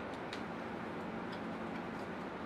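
Quiet room hum with a few light, irregular clicks from a whiteboard marker being handled.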